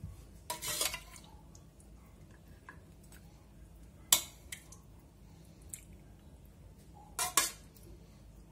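Metal spoon scraping and knocking against the inside of an aluminium pressure-cooker pot as stew is spooned out: a short scrape about half a second in, one sharp clink, the loudest, about four seconds in, and two quick knocks near the end.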